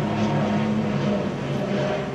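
A steady, low engine drone with its pitch stepping up slightly at the start.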